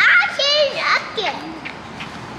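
A young child's high-pitched voice calling out briefly in the first second, loudest at the start, then dropping to a few quieter vocal sounds.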